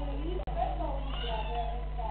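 Several people talking over one another around a table, with a short high-pitched cry about a second in, over a steady low electrical hum from the camera's audio.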